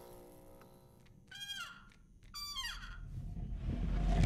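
Animated-film soundtrack: a soft sustained musical chord fades out, then two falling gliding tones sound about a second apart.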